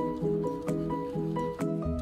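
Background music: a melody of short, evenly paced notes, with a heavy bass beat coming in near the end.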